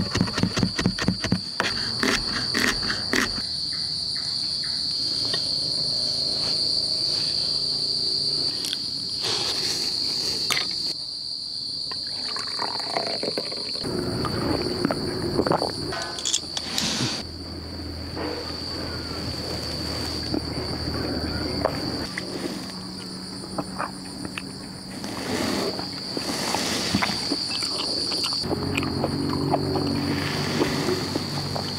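Crickets chirring steadily on one high pitch throughout. For the first three seconds a knife chops rapidly and evenly on a wooden cutting board, mincing garlic.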